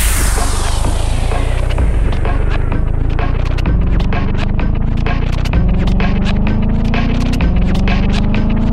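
Electro house music in a breakdown: the full beat drops out and a low buzzing bass synth holds on, stepping up in pitch three times, about every two seconds. A rising synth line climbs above it while clicky percussion creeps back in.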